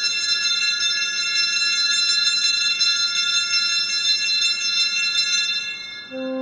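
Small altar bells (Sanctus bells) shaken repeatedly at the elevation of the chalice: a bright jingling ring of several high-pitched bells, renewed stroke after stroke. It dies away near the end.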